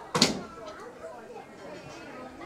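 A single sharp bang about a quarter second in, then faint chatter of people in the background.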